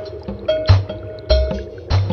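Instrumental passage of a hip-hop track: drum hits land roughly every half second over a sustained held tone, with no vocals.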